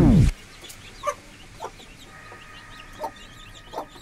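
Background music slides down in pitch and stops just after the start. Then chicks peep continually while an adult hen gives about four short clucks.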